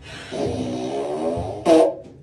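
A long, buzzing fart sound with a low, slightly wavering pitch, lasting about a second, followed by a short loud burst near the end.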